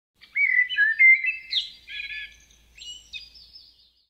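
Birdsong: a series of short chirping phrases, loudest in the first second and a half and fading toward the end.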